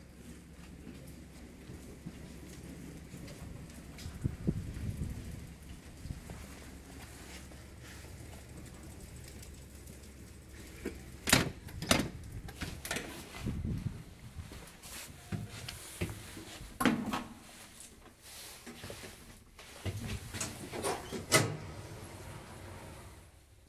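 A 1975 KONE elevator (modernized) arriving at the landing with a low hum from the shaft. From about halfway through come sharp clicks and clunks as the manual swing hall door is unlatched and pulled open, with more knocks near the end as the cab is entered.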